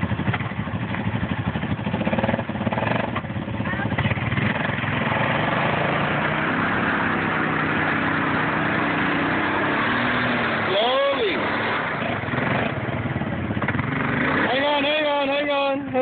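ATV engine running hard and steady while the quad sits stuck in deep mud. A person's rising-and-falling shout comes about eleven seconds in, and a wavering shout near the end.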